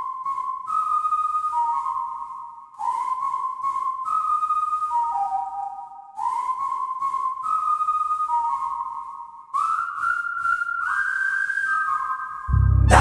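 A whistled melody: a short phrase of held notes stepping up and down, repeated three times about every three seconds, then a higher variation near the end.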